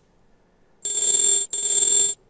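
Charting-site price alert tone: a loud, high, steady electronic tone sounds twice, each burst about half a second long, starting about a second in, signalling that a price alert has triggered.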